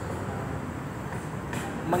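Steady background rumble of road traffic during a pause in speech, with a man's voice starting again at the very end.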